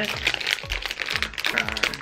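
A plastic blind-bag wrapper crinkling and crackling as hands twist and pull at it to tear it open, a dense run of small crackles.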